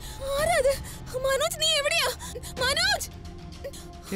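Dramatic background score: a high female voice sings a wordless, wavering line in three short phrases over a low held drone.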